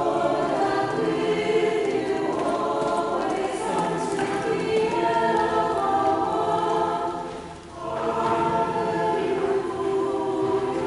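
A choir singing a hymn in held, sustained notes, with a brief break between phrases about three quarters of the way through.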